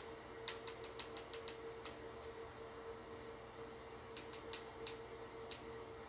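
Faint clicking of TV remote-control buttons being pressed to move through a search screen: a quick run of about seven clicks in the first second and a half, then a few more about four to five seconds in, over a faint steady hum.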